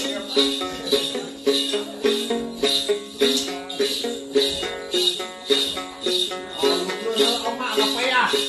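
Then ritual music: a plucked đàn tính lute playing a repeating figure, with a shaken jingle-bell rattle (xóc nhạc) marking a steady beat about twice a second.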